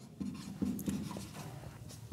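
Writing by hand: a series of short, irregular scratching strokes of a pen or marker, fairly quiet.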